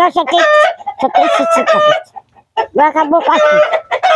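Chickens in a coop calling loudly and repeatedly with drawn-out, rising and falling cackles, in two runs with a short break a little past halfway. The hens are described as singing a lot, and the visitor wonders whether one is laying.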